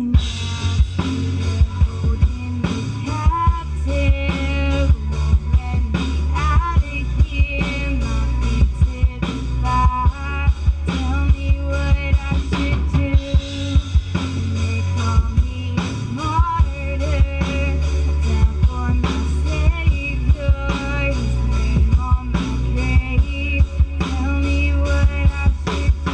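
Live hip-hop band music: a drum kit playing a steady beat with snare and bass drum over a heavy bass backing, while a woman sings a melodic line between the rapped verses.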